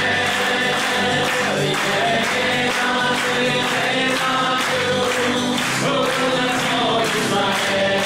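A group of people singing together and clapping along in time.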